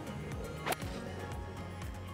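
A golf club striking the ball once: a single sharp click about two-thirds of a second in, over background music.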